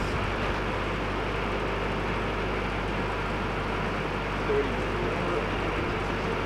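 Steady running drone of an engine-driven welding machine, a constant low hum under an even wash of noise.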